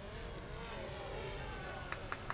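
A vehicle engine running in the background, its pitch wavering up and down.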